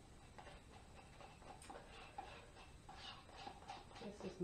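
Near silence: room tone with a few faint, irregular ticks.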